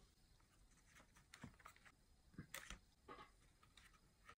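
Near silence, with a handful of faint, light clicks and rustles of small kit parts being handled at a cardboard model's dowel pivot.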